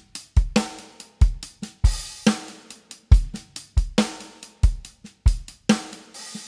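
Sampled acoustic drum kit from Native Instruments Studio Drummer (Session Kit) playing back a stock MIDI groove: kick, snare and hi-hat in a steady beat, with a kick roughly every two-thirds of a second under the hi-hat pattern. This is the unedited preset pattern, before the kick and snare are reprogrammed.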